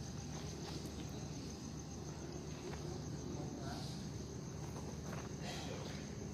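Passenger train rolling slowly into a station, heard from inside the carriage: a low, steady rumble with a steady high-pitched whine over it and a few faint clicks.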